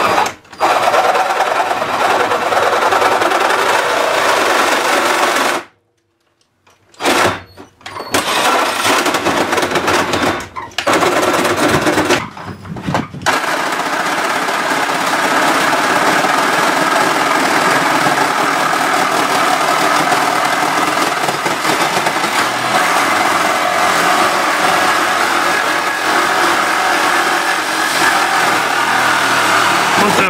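Reciprocating saw cutting through a thin sheet-metal water heater shroud, with a buzzing, rattling run. It stops and starts several times in the first half as the cut is repositioned, then runs without a break for the rest.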